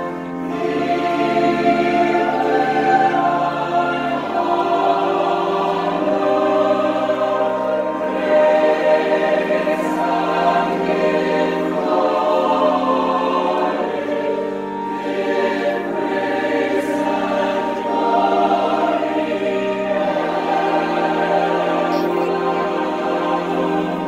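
Large mixed choir of men's and women's voices singing together, with sustained chords that change every few seconds.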